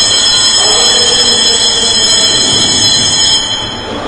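Rail car running on its track, its wheels squealing in a steady, high-pitched whine of several tones over a running rumble; the squeal fades out near the end.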